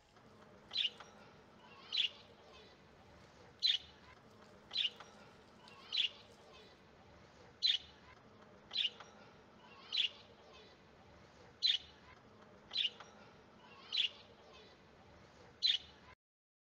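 A bird chirping a single short, high note about once a second, over and over at a steady pace.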